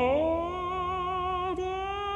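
A male tenor voice sustaining a sung note. It slides up at the start onto a long held note with gentle vibrato, over quiet piano accompaniment.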